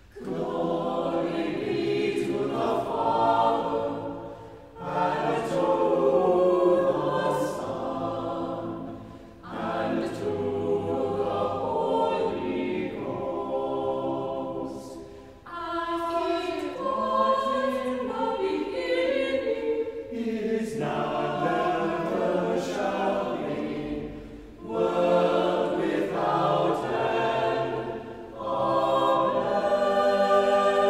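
Church choir singing in harmony, in a series of phrases of about five seconds each with brief breaks between them, typical of a chanted psalm or canticle.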